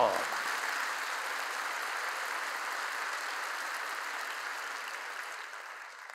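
A large congregation applauding, a steady clatter of many hands that dies away near the end.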